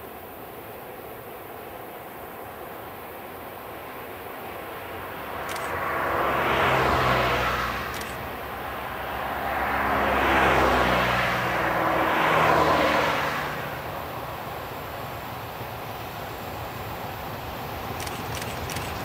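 Unsilenced diesel engine of a ČSD class 752 locomotive pulling away with a freight train, rising to a loud run in two long surges and then easing back to a steady rumble.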